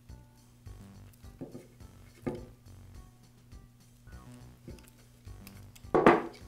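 Quiet background music, with a couple of faint clicks from pliers handling a crimp connector and wires about one and a half and two and a half seconds in.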